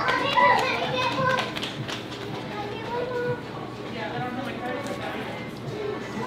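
Indistinct background chatter of several voices, children's among them, louder in the first second or so and again a little later, with a few small clicks.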